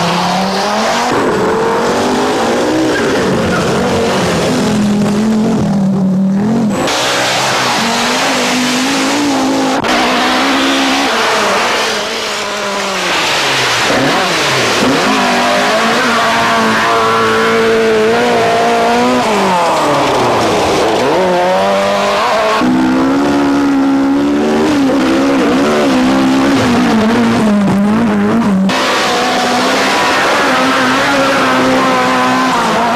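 Rally car engines run at high revs on a gravel stage as several cars pass one after another. The pitch rises and falls sharply through throttle lifts and gear changes over a hiss of tyres and gravel. The sound changes abruptly a few times, where one pass is cut to the next.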